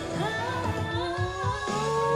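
A K-pop girl group singing live with band accompaniment over a steady beat, their voices sliding up into long held notes.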